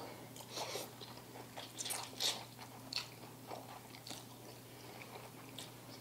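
Korean instant ramen noodles being eaten: soft chewing and slurping, a scattering of short, faint mouth sounds.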